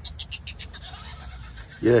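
A 'Bag of Laughs' novelty toy playing tinny recorded laughter in quick, even ha-ha pulses, fading out after about a second. A man's voice cuts in loudly at the very end.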